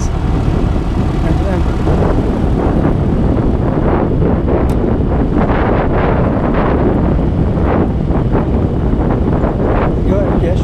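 AutoGyro MTOsport autogyro's engine running steadily as the aircraft taxis, a dense low drone heard from the open cockpit, with wind buffeting the microphone from about four seconds in.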